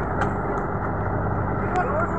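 A fishing boat's engine running steadily, a low even hum, with a few faint clicks on top.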